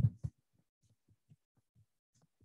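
Faint, muffled keystrokes on a computer keyboard, heard as soft low thuds about every quarter second as text is typed. A spoken word ends just as it begins.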